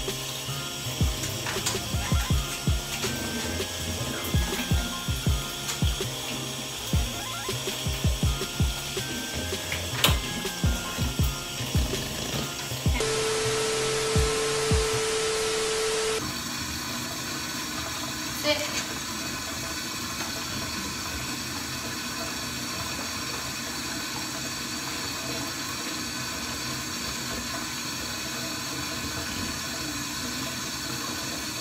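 Background music with a steady beat for the first thirteen seconds. It gives way to about three seconds of static hiss under a steady electronic beep. After that, a bathtub faucet runs steadily into the tub.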